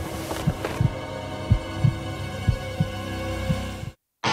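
Suspense sound design: a heartbeat effect of low double thumps about once a second over a steady, droning music bed, cutting off abruptly at the end.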